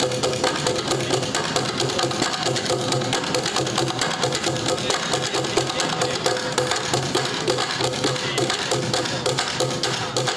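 Bucket drumming ensemble: several players striking upturned plastic buckets with drumsticks in a fast, dense, steady rhythm.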